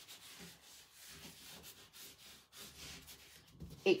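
Faint rubbing and rustling of a wad of cling film being wiped over thin rice paper glued onto a cabinet door panel, smoothing it flat and pressing out wrinkles.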